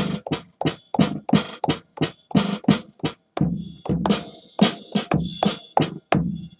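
Drum-kit hi-hat samples triggered from MPC pads by finger drumming, a steady run of short hits about three to four a second, with randomized pitch and filtering that give them odd, glitchy 'jungle effects'. A thin high ringing tone comes in around the middle.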